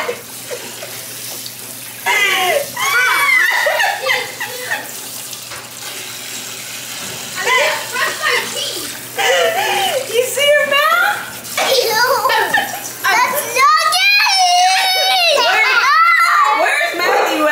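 Kitchen faucet running into a sink of dishes, a steady splashing, under children's high-pitched wordless voices and shouts that come and go, the loudest near the end.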